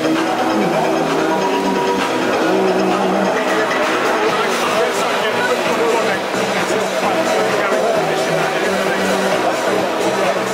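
Music playing loudly and continuously, with voices mixed in.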